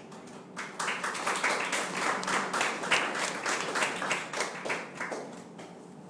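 Applause: several people clapping, rising about half a second in and dying away near the end.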